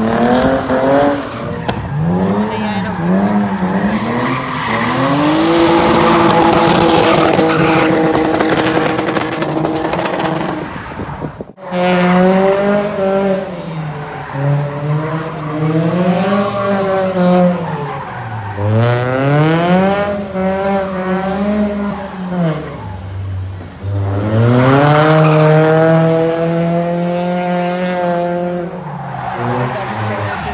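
A drift car's engine revving hard, its note climbing and falling again and again as the throttle is worked through slides, sometimes held high for a few seconds, over tyre squeal. The sound breaks off for a moment about a third of the way in, then the revving resumes.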